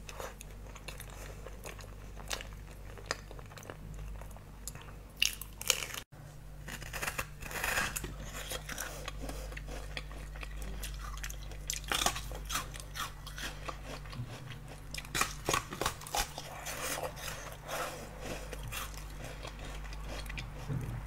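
Close-up eating sounds: chewing a bite of chocolate-coated banana, then, after a cut about six seconds in, biting and chewing yellow-fleshed watermelon, with repeated short crunches and wet mouth clicks. A faint steady low hum lies underneath.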